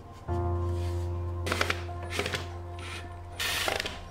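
A 12V cordless drill/driver motor running steadily while driving a screw into a miter saw's metal throat plate, starting about a third of a second in, with a few short clattering bursts, the loudest near the end.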